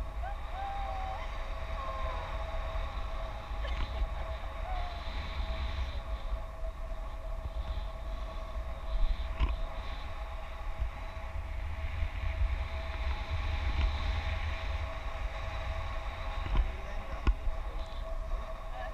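Wind buffeting the camera's microphone in flight under a tandem paraglider: a steady low rumble with a faint steady whine above it. There are a couple of brief knocks, about halfway through and near the end.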